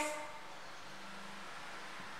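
Steady faint background hiss of room tone, with a faint low hum about a second in.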